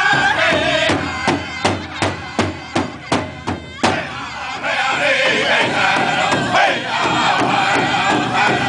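Powwow drum group singing in high, strained voices while beating one large bass drum in unison with drumsticks. About a second in, the singing thins for about three seconds of loud, evenly spaced drum strokes, roughly three a second, then the full singing returns over a steady beat.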